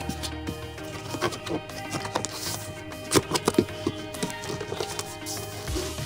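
Background music playing, with a few scattered light knocks and taps of a cardboard shipping box's flaps being opened and handled.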